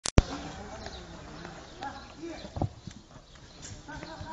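Voices talking in the background, with a loud click at the very start and a few short dull thumps, the strongest about two and a half seconds in.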